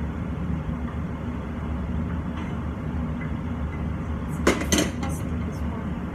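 Metal cookware and utensils clinking a few times about four and a half seconds in, over the steady low hum of a kitchen extractor hood.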